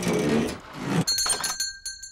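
The cartoon's background music ends, and about halfway through a small shop doorbell rings once, a clear high ring that hangs for about a second.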